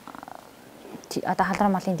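A woman speaking Mongolian: she starts with a short creaky, rattling hesitation sound in her voice, then goes on talking from about a second in.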